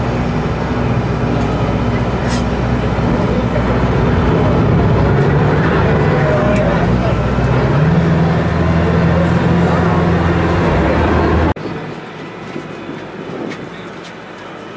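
A small passenger tender boat's engine running steadily with a low drone, heard from on board; about two thirds of the way through the drone settles onto one held pitch. Near the end it cuts off suddenly to a much quieter, steady wash of noise.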